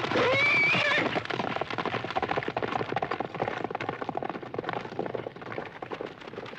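A horse whinnies once, a short call near the start, then a fast, dense clatter of hooves carries on to the end.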